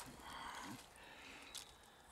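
Near silence: faint outdoor background noise, with a single faint click about one and a half seconds in.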